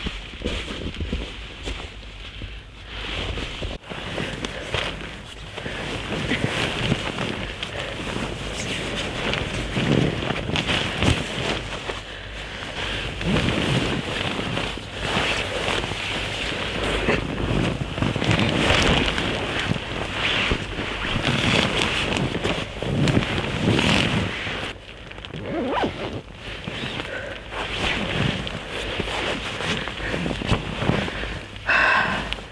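Close, irregular rustling of nylon sleeping-bag and hammock fabric, with zipping, as a person shifts about and settles into a sleeping bag. It comes in uneven swells and scrapes with a brief lull a little before the end.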